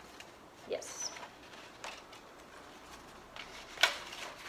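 Faint rustling and crinkling of red construction paper as the cut columns of a pop-up card are pushed out and flexed, with a sharp paper crackle near the end. A brief high chirp-like sound comes about a second in.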